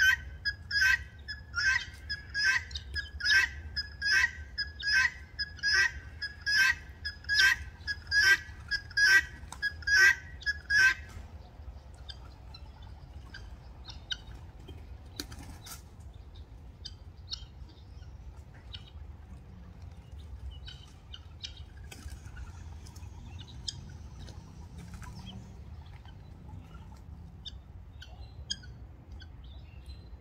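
A bird calling loudly over and over, about one and a half harsh calls a second, which stops suddenly about eleven seconds in. After that only faint scattered clicks and small chirps are left.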